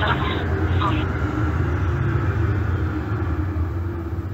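Steady low rumble of a moving vehicle, heard muffled and thin over a pocket-dialed phone call.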